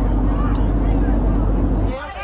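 Airliner cabin noise, a steady low drone, with passengers' indistinct voices under it.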